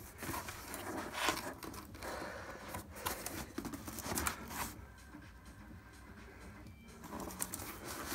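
A cardboard box being handled and turned over: irregular scrapes, knocks and rustles of cardboard and packaging. The sounds go quieter for a couple of seconds after about five seconds in, then pick up again near the end.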